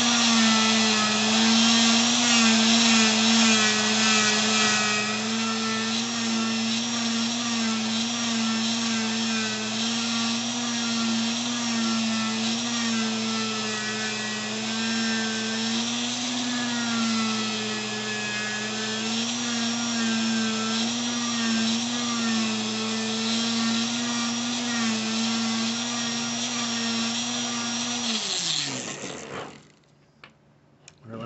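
Handheld rotary grinder running at high speed with an abrasive bit, grinding and polishing inside a port of an aluminium cylinder head. The steady whine wavers a little in pitch as the bit is worked against the metal, then winds down and stops near the end.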